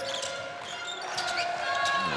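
Basketball being dribbled on a hardwood court during live play, a few sharp bounces over steady arena background sound.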